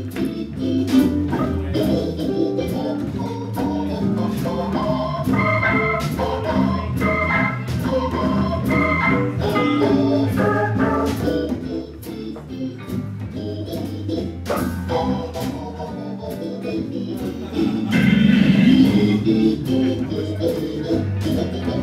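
Hammond organ playing quick jazz melodic runs, with drums and the band accompanying. The organ grows louder near the end.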